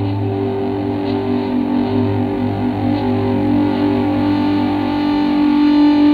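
Instrumental intro of an alternative rock song: effects-laden electric guitar holding sustained, ringing chords, with no vocals yet. A low sustained note underneath drops away about four and a half seconds in.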